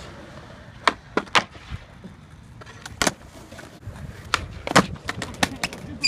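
Skateboard wheels rolling on concrete, broken by a run of sharp clacks of the board hitting the ground. The clacks come fastest and loudest from about four and a half seconds in, as a trick attempt ends in a fall and the board shoots away.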